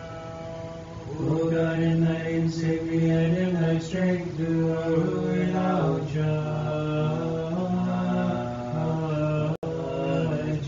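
Orthodox monastic chant at Vespers: voices singing a single melodic line that steps between held notes, growing louder about a second in. The sound cuts out for an instant near the end.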